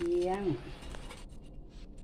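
A woman's voice finishing a word, then a few faint, light clicks and scrapes of metal tongs against a plate.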